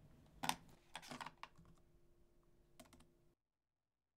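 Typing on a laptop keyboard in short bursts: a loud clatter of keys about half a second in, another run around a second in, and a couple of keystrokes near three seconds. The sound then cuts off to dead silence.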